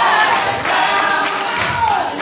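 A large group of mixed voices singing a gospel song together live on an amplified stage, with rhythmic hand clapping keeping the beat. A held high note slides downward near the end.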